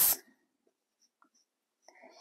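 Dry-erase marker writing on a whiteboard: faint, scattered little ticks and scratches of the marker tip on the board's surface.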